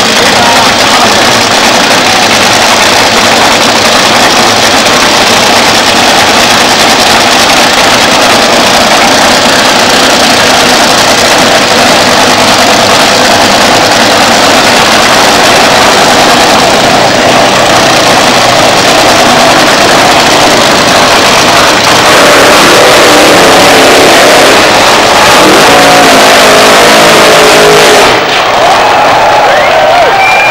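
Nitro-burning dragster's supercharged V8 running at the start line, very loud and overloading the camcorder microphone throughout. From about two-thirds of the way in the engine note grows louder and clearer, running into the burnout near the end.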